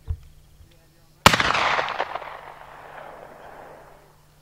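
A single rifle shot from a black-powder muzzleloading long rifle: one sharp report about a second in, followed by a long echo rolling off the hillside and fading away over about two seconds.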